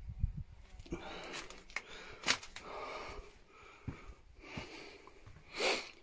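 A person breathing and sniffing close to the microphone in a few short breaths, with a few sharp clicks or taps in between.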